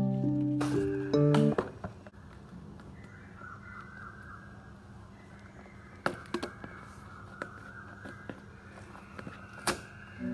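Soft background music that stops about one and a half seconds in. After that comes quiet room tone with a few light clicks and taps as pens are set down beside a pouch, the loudest of them near the end.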